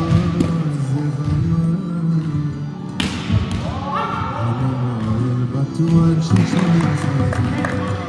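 Background music, a song with held, gliding notes, over a few sharp thuds; the loudest thud comes about three seconds in.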